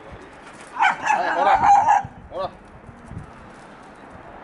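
A small dog vocalising: a loud, high, wavering whine lasting about a second, then a short yelp a moment later.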